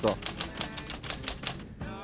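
A rapid, even run of sharp clicks, about seven a second, that stops shortly before the end.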